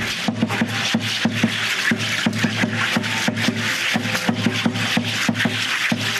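Percussion of a danza Guadalupana troupe: rattles shaken in a fast, even rhythm of about four beats a second, with low thuds on the beat.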